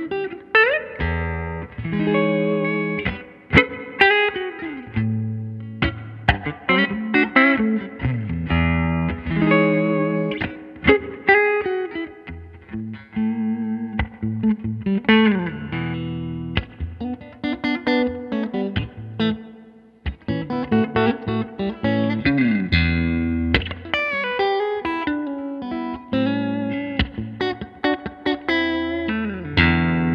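Guild Surfliner Deluxe solidbody electric guitar played clean through a 1964 Fender Vibroverb tube amp: a continuous run of single notes and chords, with several notes gliding in pitch.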